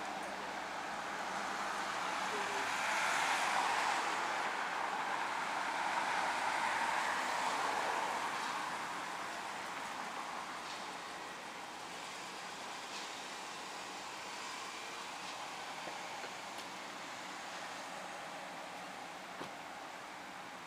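Road traffic at a street intersection: cars passing, with a pass that swells a couple of seconds in and fades by about ten seconds, then a fainter steady traffic noise.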